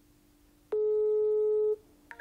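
Telephone ringback tone heard over a smartphone's speaker: a single steady beep about a second long, starting suddenly a little under a second in. It is the ringing signal a caller hears while the other phone rings and has not yet been answered.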